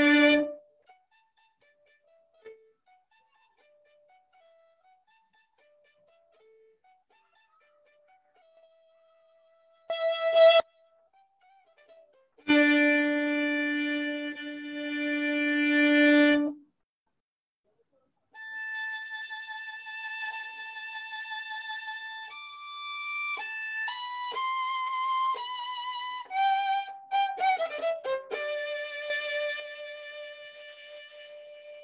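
Solo violin playing with long rests: a held note cuts off just after the start, then near silence with faint notes for about ten seconds and a short note. A long low held note follows, a pause, then a high held note and a descending run of shorter notes that ends on a held middle note.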